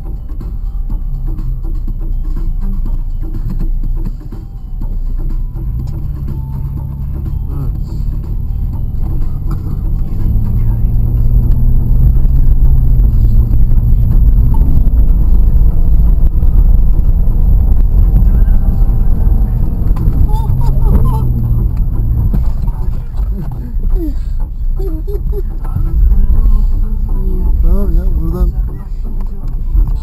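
Suzuki Vitara engine heard from inside the cabin, working hard as the 4x4 drives through deep snow, its pitch rising and falling and growing louder from about ten seconds in for roughly ten seconds. Voices come in near the end.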